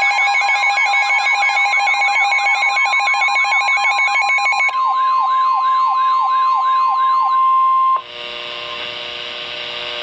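A Midland NOAA weather radio sounds a severe thunderstorm warning alert: a warbling siren that sweeps up and down about twice a second, over a steady tone near 1 kHz. The siren stops about seven seconds in. The steady tone, the broadcast's warning alarm tone, cuts off about a second later, leaving a quieter hum on the open channel.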